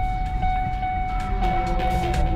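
Low road and engine rumble inside a moving Ford Focus's cabin, with a steady high electronic tone that dips briefly about twice a second.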